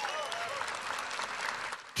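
Large rally crowd applauding, the clapping thinning out near the end.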